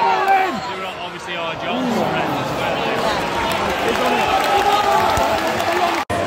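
Football crowd in a stadium stand: many spectators' voices shouting and calling over one another, with a drawn-out call held by many voices through the second half.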